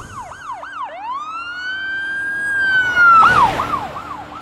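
Electronic emergency-vehicle siren in rapid yelp, switching about a second in to one long wail that rises, holds and falls, then back to the rapid yelp near the end. The loudest moment comes as it switches back.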